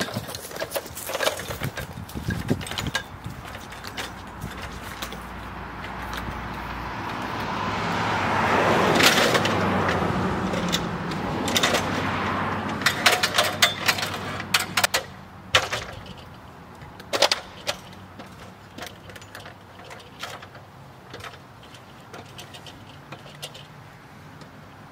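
Extension ladder knocking and rattling as it is set against a wall and climbed, a run of sharp clanks and light metallic jingles. A passing vehicle's noise swells up over several seconds and fades away, loudest about nine seconds in.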